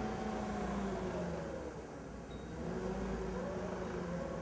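Forklift engine running at a low idle, its speed sagging slightly around the middle and picking up again as it holds the suspended engine block.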